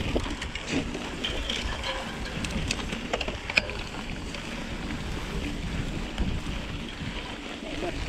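Mountain bike rolling through tall dry grass, with a steady low wind rumble on the microphone and scattered clicks and rattles, most of them in the first few seconds.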